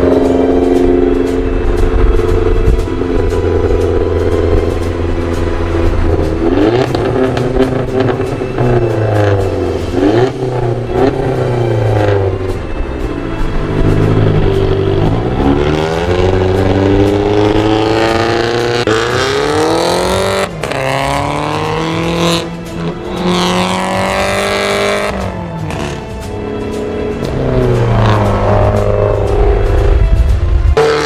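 Car engines revving hard and pulling up through the gears in a roll-on drag race between a Volkswagen Jetta Mk6 and a remapped Audi A3. The pitch climbs, drops at each shift and climbs again, several times, heard from inside one of the cars.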